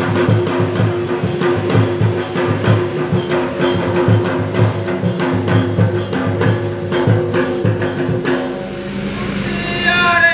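Danda nacha folk drumming: rapid, even strokes on barrel drums over a steady held tone. The drumming stops about eight seconds in, and only the held tone carries on.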